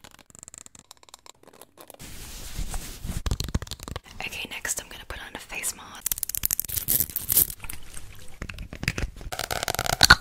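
Long fingernails tapping and scratching on plastic and glass bottles held close to the microphone. It is quiet at first, then a quick, dense run of clicks begins about two seconds in.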